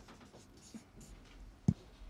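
Faint scratching and rustling in a small room, with one sharp click about three-quarters of the way through.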